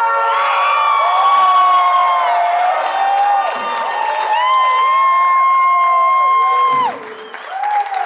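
A rock singer holding a long high note twice at the end of a live song, each note lasting a couple of seconds, over a crowd cheering and whooping. The second note cuts off suddenly about seven seconds in, leaving the crowd's cheering.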